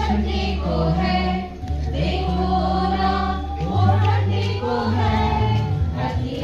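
A mixed group of men and women singing a Hindi patriotic song together, with long held notes, over a steady low accompaniment that moves to a new note every second or two.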